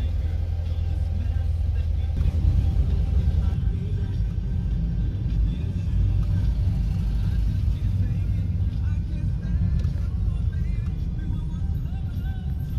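Steady low road and engine rumble of a car driving through city streets, heard from inside the cabin.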